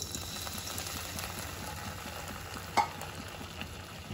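Water poured into a hot non-stick kadai, sizzling and bubbling steadily as it hits the hot pan. A single sharp tick is heard a little under three seconds in.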